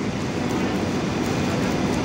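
Steady rumble of heavy industrial machinery running, with a faint low hum.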